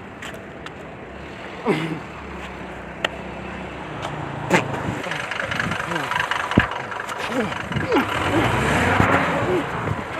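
A motor vehicle engine running close by, a steady low hum that grows louder over the second half, with people talking over it.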